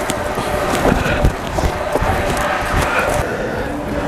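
Rustling and handling noise with scattered knocks and thumps from people moving close to a handheld camera.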